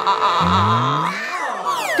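A high, wavering scream that quivers up and down about five times a second, then a comic rising slide sound and a few quick falling whooshes near the end.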